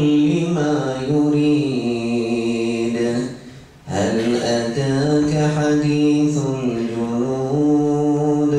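A solo male voice reciting the Quran in Arabic in a melodic, drawn-out chant. There are two long phrases of held, slowly gliding notes, with a short breath just after three seconds in.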